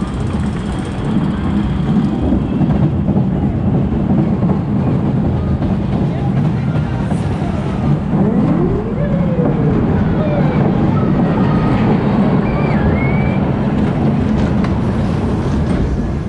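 SBF Visa family coaster train running along its steel track, with a steady, loud rumble of wheels throughout.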